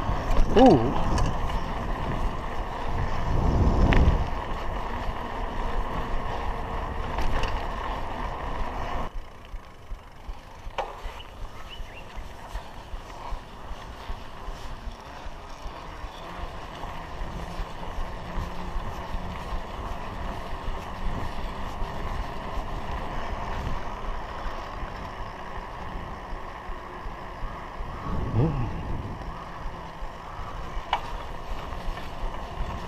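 Wind and road noise from riding a bicycle on tarmac, picked up by a handlebar-mounted camera. It is louder for the first several seconds and then drops quieter about nine seconds in. There are short falling-pitch sweeps near the start and again near the end.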